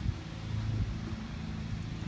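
A steady, low engine hum in the background, with no other distinct event.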